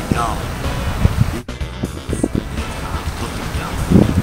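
Wind buffeting the microphone: an uneven low rumble, with a few brief faint sounds over it and a short drop in level about a second and a half in.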